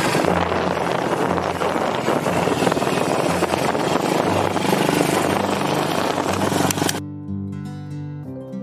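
Loud wind rushing over the microphone, with a motorbike running underneath, during a ride. It stops suddenly about seven seconds in and background music takes over.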